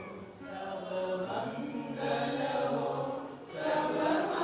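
A woman singing a slow chant into a microphone over a hall PA, holding long notes and pausing for breath about a third of a second in and again near the end.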